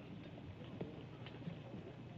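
Faint footsteps and shuffling on a floor, a few soft scattered knocks over quiet room tone.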